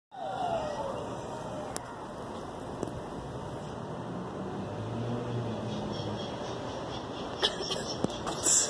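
Steady street noise with a vehicle's low engine hum swelling and fading in the middle. A short falling tone sounds in the first second, and a few sharp clicks come through, more of them near the end.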